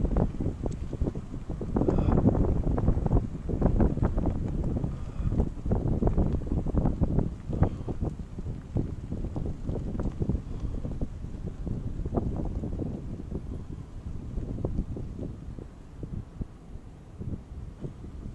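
Wind buffeting the microphone in uneven gusts, a rough low rumble that eases off near the end.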